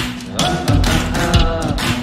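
Background rock music with guitar and a steady drum beat.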